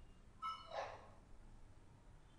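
A single faint, short animal call about half a second in.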